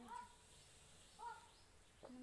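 Near silence, broken by one short pitched call, voice or animal, about a second in.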